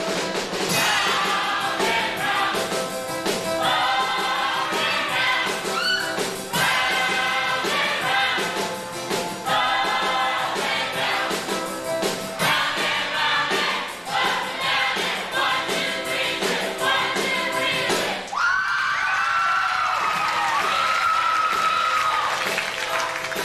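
A group of voices singing together over instrumental accompaniment. About eighteen seconds in, the lower accompaniment drops away while a long high note is held.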